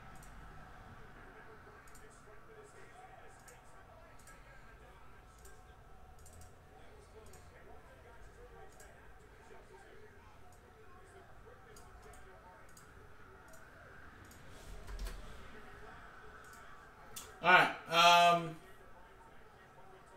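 Faint, irregular light clicking, typical of typing on a computer keyboard, over a low background murmur. A man's voice speaks briefly and more loudly near the end.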